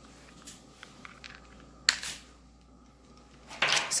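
Small plastic contact lens kit being opened and handled one-handed: faint ticks and light rustling, with one sharp click about two seconds in.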